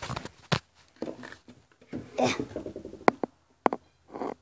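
Handling noise, rustling with a few sharp clicks and knocks, the sharpest about three seconds in.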